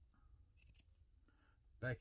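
Large leather scissors making a few faint short snips through a thin leather backing, trimming the excess close around the beaded edge.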